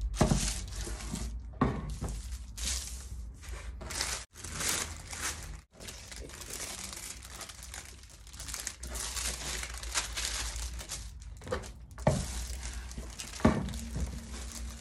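Foil-lined crisp packets and baking paper crinkling and rustling as they are handled and smoothed flat on a wooden table, in irregular bursts with a few soft knocks near the start and the end.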